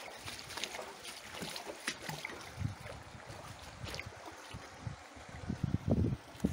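A shallow stream running over stones, a steady hiss, with irregular gusts of wind buffeting the microphone that grow stronger near the end.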